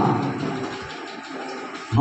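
A man's voice through a PA system trails off into a brief lull with room echo, then comes back loud just before the end.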